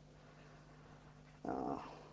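Quiet room tone with a faint steady hum, broken about one and a half seconds in by a short spoken hesitation, "uh".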